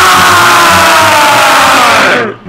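Several young men's voices screaming together at full volume, one long shared shout whose pitch slides slowly down before it breaks off just after the end. Background music with plucked bass runs underneath.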